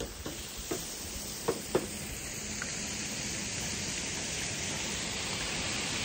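A steady rushing hiss that grows gradually louder, with a few sharp clicks in the first two seconds.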